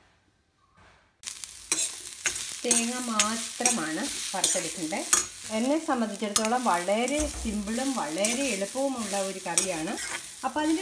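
Grated coconut sizzling as it is stirred and fried in a steel pan, with spatula scrapes against the metal, starting suddenly about a second in. A wavering pitched sound runs over the frying from about three seconds in.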